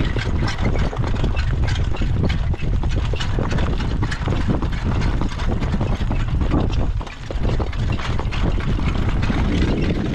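Wind rumbling on the microphone of a horse-drawn jog cart moving at a trot, mixed with the patter of hoofbeats on the dirt track and the cart's rattle. It dips briefly about seven seconds in.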